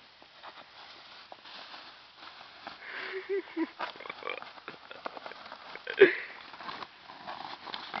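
Thin black plastic garbage bag crinkling and rustling as it is squeezed and pressed to try to burst it, with one sudden loud crack about six seconds in.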